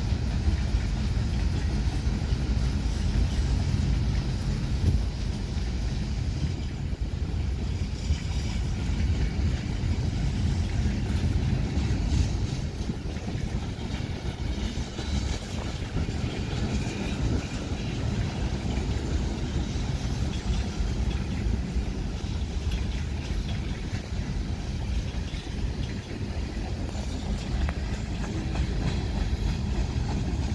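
Kansas City Southern mixed freight train's cars rolling past at steady speed: a continuous rumble of steel wheels on the rails.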